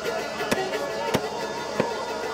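Meat cleaver chopping through roast meat, three sharp chops about two-thirds of a second apart, with music and chatter behind.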